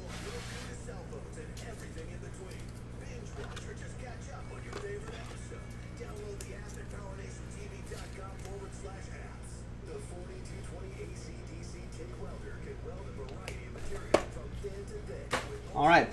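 A steady low electrical hum under faint background music, with two sharp knocks a little before the end.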